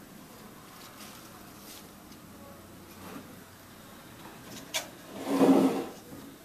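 Cut dahlia stems and leafy foliage rustling as they are handled and pushed into a vase arrangement, with a sharp click just before a louder, second-long rustle of leaves near the end.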